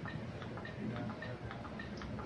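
CPR training manikin clicking in a quick, even rhythm under repeated chest compressions. The click is the manikin's signal that a compression has reached full depth.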